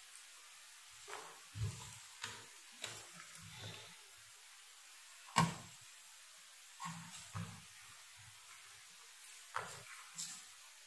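Scattered soft knocks and clicks of hands handling multimeter test probes and leads against a circuit board and workbench, about nine in all, the loudest a sharp knock about halfway through. Faint hiss underneath.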